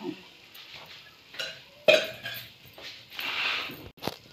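A spoon knocking against an aluminium pot, twice in quick succession about a second and a half in, as oil is spooned over meat and spices. A brief hiss follows near the end.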